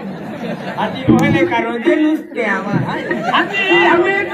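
Speech only: stage performers talking loudly, several voices at once.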